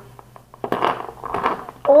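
Metal Beyblade spinning tops clicking and clattering against one another as they are handled and set down on a wooden floor, a run of small irregular clicks about a second long.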